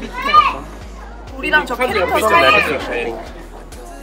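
Visitors' voices, children among them, talking and calling out over background music.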